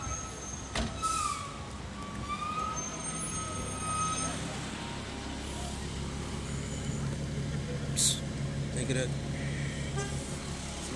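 Steady low hum of vehicle engines, with a wavering high-pitched squeal during the first four seconds, a click just under a second in, and a short hiss about eight seconds in.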